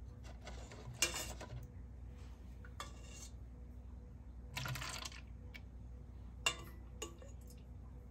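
Plastic cups and a utensil being handled on a ceramic plate: a handful of short clicks and clatters, spread out over several seconds.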